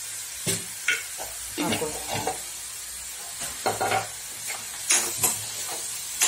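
Chopped onions, tomatoes and green chillies sizzling in a kadai over a gas flame, with a ladle scraping and clattering against the pan in irregular strokes as the mix is stirred.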